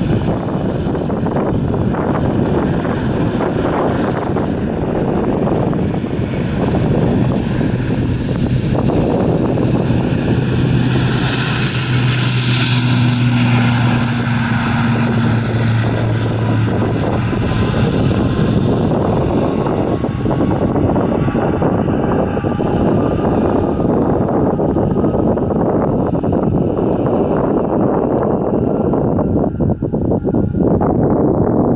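ATR 72-600's twin turboprops at takeoff power, with the steady buzz of the six-bladed propellers, during the takeoff roll. It is loudest about halfway through as the aircraft passes close, then the pitch falls as it moves away and lifts off.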